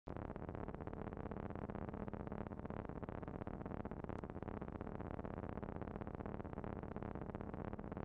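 Eurorack modular synthesizer playing quietly: a sustained, fast-fluttering tone texture, with a low steady note held for a couple of seconds near the start.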